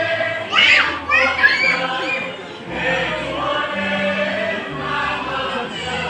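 A choir singing with musical accompaniment played over loudspeakers, with steady bass notes under the voices, amid audience chatter. A louder voice cuts in briefly about half a second in.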